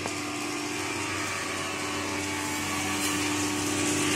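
Woodworking machinery running steadily in a timber workshop, an even motor hum with a constant low drone and a whirring noise above it.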